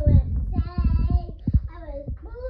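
A young child singing a slow tune, with several dull low thumps in the first second and a half.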